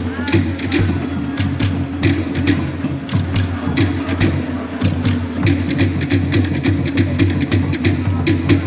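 Polynesian drumming: quick, sharp wooden strikes in a fast rhythm over a steady low drum beat.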